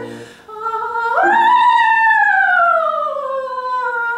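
Soprano singing with piano accompaniment: after a short break for breath, she takes a high note about a second in and lets it glide slowly downward, over held piano chords.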